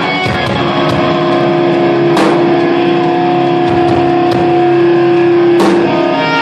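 Live rock band playing loud, with distorted electric guitars holding one long sustained chord over drums, and cymbal crashes about two seconds in and again near the end.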